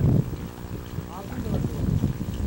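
Wind buffeting the microphone in gusts, over a steady low hum.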